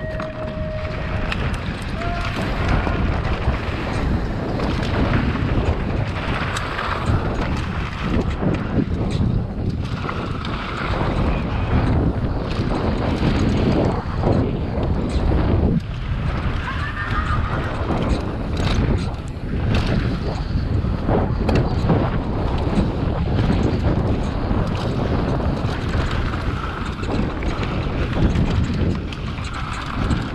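Wind buffeting a helmet-mounted GoPro's microphone at speed as a mountain bike races down a dirt dual slalom course, with tyre noise on loose dirt and knocks and rattles from the bike over the bumps.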